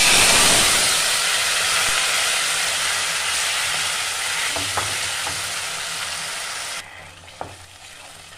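Mashed bathua and methi greens poured into hot oil tempered with whole dried red chillies in a non-stick kadai and stirred with a wooden spatula. A loud sizzle starts at once and slowly dies down, dropping off sharply near the end, with a few light spatula knocks against the pan.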